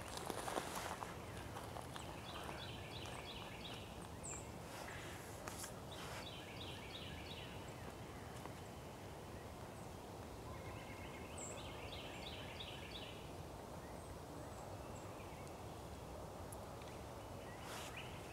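Faint outdoor background in which a songbird sings a short phrase of quickly repeated notes three times. A few soft taps come from a downy woodpecker pecking at a woody vine.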